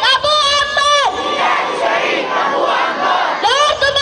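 A crowd of young voices shouting a chant in unison: a held, high call that falls off about a second in, a stretch of crowd noise, then the next shouted phrase starting near the end.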